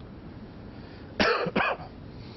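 A person coughing twice in quick succession, the first cough a little longer than the second.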